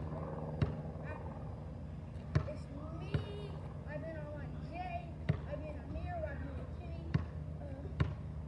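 A basketball bouncing on an asphalt street: four single sharp bounces, irregularly spaced a second or two apart.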